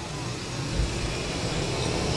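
Steady background noise with a low rumble and a brief low thump just under a second in.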